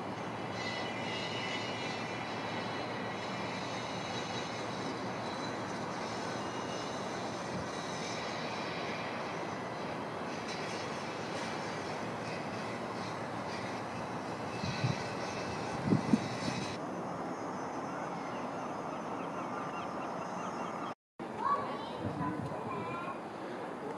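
Steady rushing outdoor noise with no clear single source, broken by a few brief bumps about two-thirds of the way through.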